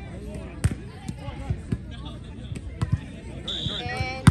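Spectators chattering around an outdoor volleyball court, with several sharp smacks of a volleyball being hit during a rally. A brief high tone sounds near the end.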